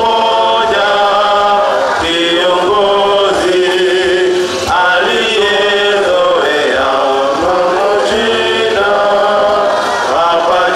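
A congregation singing a hymn together, many voices on long held notes.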